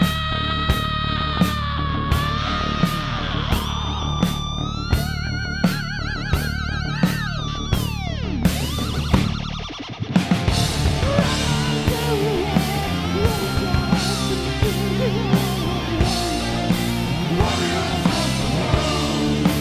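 Heavy metal band playing: drums hitting a steady beat about every 0.7 s under a held, wavering lead line over guitars. The lead slides down in pitch a little past the middle, and about ten seconds in the full band comes in thicker and denser.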